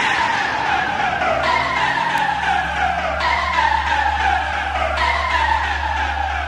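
Electronic dance music breakdown from an old-school acid and hardcore mix: a synth tone falls in pitch over and over, every second or so, above a steady low bass drone, with no drum beat.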